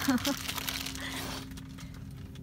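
A short laugh, then faint crinkling and rustling of something being handled, which dies down about two-thirds of the way through.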